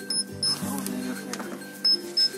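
Handheld paint thickness gauge beeping as it takes readings on a car body panel: two short high beeps near the start and another near the end. A steady music bed plays underneath.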